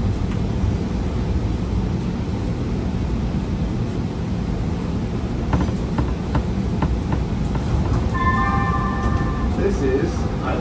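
Kinki Sharyo P2550 light rail train running on track, heard from the cab: a steady low rumble, a few sharp clicks around the middle, and a brief cluster of steady high tones near the end.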